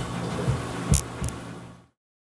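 Kitchen room tone with a steady low hum, a few soft low thumps and a sharp click about a second in. The sound cuts off abruptly just before the end.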